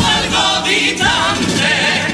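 Men's choir of a Cádiz carnival comparsa singing together in several voices.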